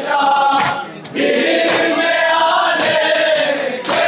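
A group of men chanting a Shia mourning lament (nauha) together, led over a microphone and holding one long note through most of it, with sharp beats about once a second.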